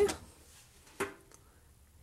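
A single sharp click about a second in, with a couple of faint ticks after it: the French horn's restrung fourth-valve rotary lever being worked through its travel to test its range of motion.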